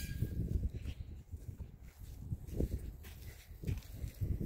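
Footsteps on bare dirt as a person and a llama walk along together, soft irregular steps over a steady low rumble.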